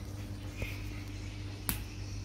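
A single sharp click near the end, with a smaller click and a faint, brief high squeak about a third of the way in, over a low steady hum.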